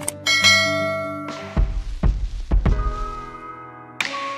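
Sound effects of a subscribe-button animation over background music: a click and a bright bell-like ding, then deep thuds with a rushing whoosh in the middle.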